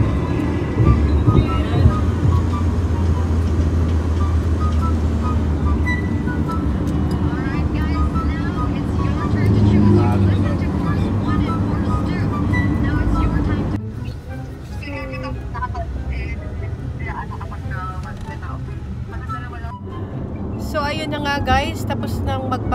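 Steady low road and engine rumble inside a moving car, with background music over it. About 14 seconds in the rumble cuts off abruptly, leaving quieter music with a voice.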